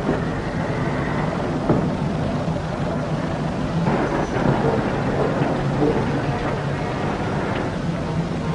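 Car engine running steadily, with another car driving past around the middle.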